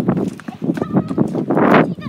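Voices with irregular knocks and rustles of a phone being handled and moved about.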